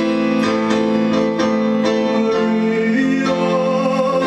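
Roland electronic keyboard played with a piano sound in an instrumental passage: held chords with notes struck in a steady stream over them.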